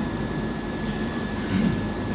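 Steady room noise: an even hiss with a low hum underneath.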